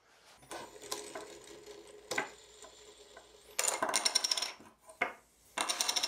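Small metal parts of a 3D printer's bed-leveling assembly being handled as the leveling wheels come off: faint clicks and scrapes, then two bursts of bright metallic clinking and jingling in the second half.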